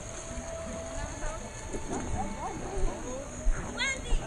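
Indistinct background chatter of several voices, with a few low knocks near the end.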